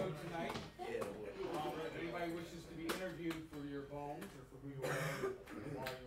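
Indistinct conversation of several people in the room, with a few sharp knocks and clicks about a second, three seconds and five seconds in.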